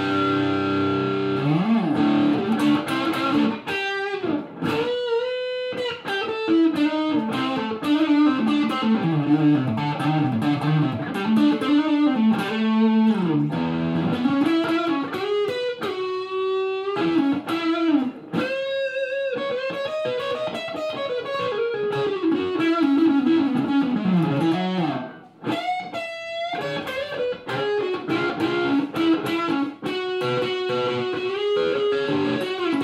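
Electric guitar, a Gibson Les Paul Standard with EMG 81/85 pickups, played through a Mad Professor Stone Grey Distortion pedal into an Engl Classic Tube 50W combo. A held chord and an upward slide open a distorted lead line of single notes with string bends and wide vibrato, broken by a few short pauses.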